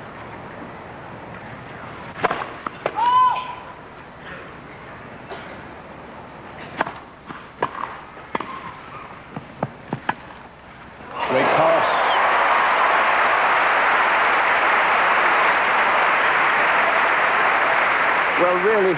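Tennis rally on a grass court: several sharp racket-on-ball strokes spread over about eight seconds, with a short call early on. About eleven seconds in, the crowd breaks into loud applause as the point ends, and it carries on steadily.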